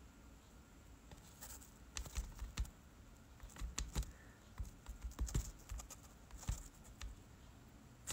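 Faint handling noise: a dozen or so irregular light taps and clicks with soft low thumps, beginning about a second and a half in. This is the sound of a phone and its wired earphone microphone being handled during a livestream.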